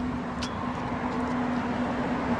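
Street traffic: a motor vehicle running nearby with a steady low hum over road rumble, and a short click about half a second in.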